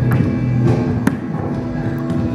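Recorded backing music with sustained pitched instruments and sharp hits about a second apart.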